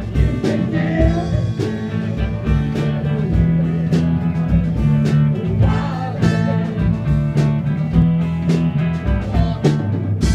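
Live rock band playing: electric guitars over a steady bass line, with drum kit beats about twice a second.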